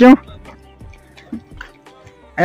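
Faint water dripping and trickling where a car is being washed with a hose, with a couple of small soft knocks about halfway through.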